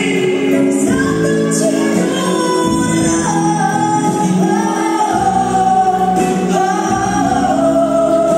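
A man and a woman singing a duet over a live band, with long held notes that bend between pitches.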